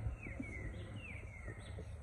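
A small bird singing a run of about five short, falling chirps, over a steady low background rumble.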